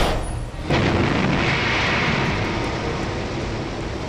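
Sound effect of the descent-stage rocket engines of NASA's Curiosity landing craft firing for powered descent: a steady, noisy roar that starts under a second in and slowly fades.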